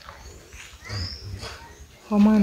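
Birds chirping in the background, short high notes about once a second, with a brief low human murmur about a second in.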